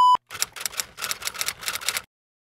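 A steady test-tone beep that cuts off suddenly, then rapid computer keyboard typing, about seven or eight key clicks a second.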